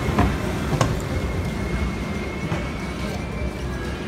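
Steady low rumble of a moving escalator mixed with casino background music and voices, with two short knocks in the first second.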